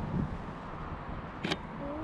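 Wind rumbling on the microphone outdoors, with one sharp click about one and a half seconds in and a brief snatch of voice near the end.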